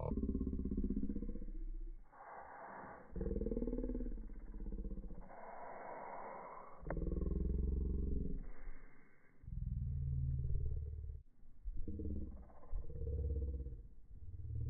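A man's voice, heavily muffled and distorted with its high end missing, so that it comes across as a growl rather than clear words.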